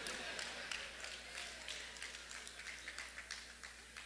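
Faint reaction from a congregation in a large hall: scattered light clapping and murmuring that fades away.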